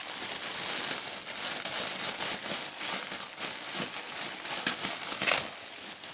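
Water from an aquarium filter splashing and trickling into the tank, a steady crackly noise with a brief louder crackle about five seconds in.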